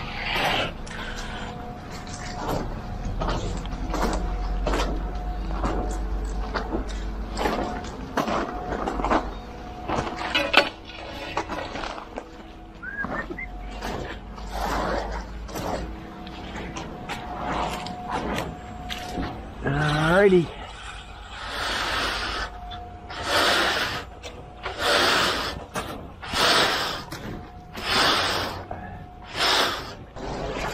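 Wet concrete being struck off with a straightedge screed board: repeated scraping strokes, about one every second and a half in the second half, over a low engine rumble.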